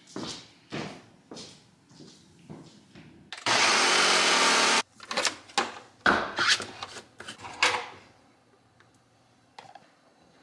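Ninja Professional 1500-watt countertop blender running in one short burst of about a second and a half that cuts off suddenly. Short knocks and clatter of the blending cup being handled come before and after it.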